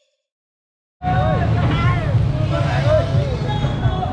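Silence for about the first second, then street sound cuts in abruptly: a steady low rumble with people's voices over it.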